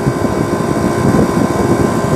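Steady mechanical running noise of a commercial refrigeration rig in operation, its compressor and fans running continuously without a break.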